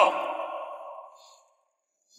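A man's voice ending a line with a long echoing tail that fades away over about a second and a half, then silence.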